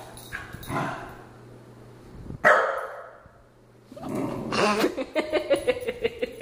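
A corgi barking at its own reflection in a dark glass door: a few short, separate barks, the loudest about two and a half seconds in.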